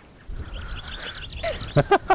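Low rustling and handling noise with faint high chirps, then, about three-quarters of the way in, a quick run of short, loud voiced sounds.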